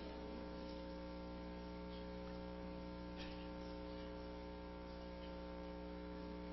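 Faint, steady electrical mains hum: a low buzz with a stack of steady overtones, unchanging throughout.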